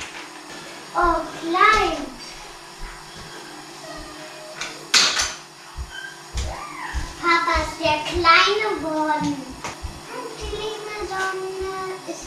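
A child's voice in several short speaking and half-sung phrases, with one sharp clatter about five seconds in.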